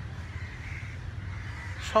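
Crows cawing faintly in the background over a steady low outdoor rumble.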